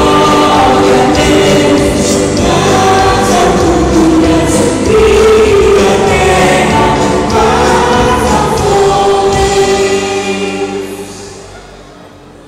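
Many voices singing a Christian worship song together with music, loud and sustained, dying away near the end.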